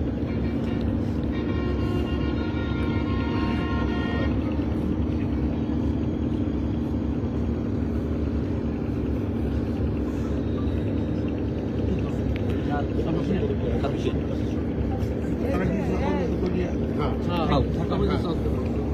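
An engine runs steadily with a constant low hum, and voices can be heard over it. A horn sounds for about three seconds near the start.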